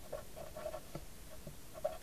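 Crayola felt-tip marker writing on paper: a string of short, faint squeaky strokes as letters are drawn.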